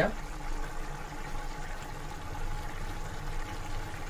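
Rice and water boiling steadily in a large steel pot of biryani, a continuous bubbling as the liquid cooks down toward the dum stage.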